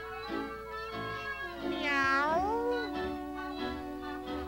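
A cartoon cat's meow, about a second long and bending in pitch, about two seconds in, over orchestral cartoon music with steady held string notes.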